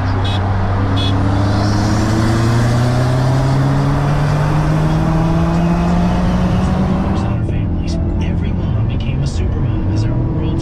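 Genesis 4.6 V8 with an aftermarket exhaust, heard from inside the cabin, pulling hard with its pitch climbing steadily for about seven seconds, then turning suddenly duller. A short car-horn toot, the Subaru's start signal for the race, sounds about a second in.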